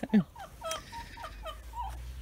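Backyard hens clucking, a string of short calls. A low rumble builds underneath in the second half.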